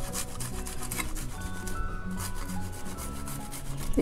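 Garlic cloves being grated on a flat stainless-steel hand grater, a run of quick rasping strokes of clove against the perforated metal.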